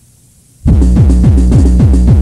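Faint tape hiss, then about two-thirds of a second in, electronic dance music cuts in suddenly at full level with a pounding kick drum and repeating falling bass tones.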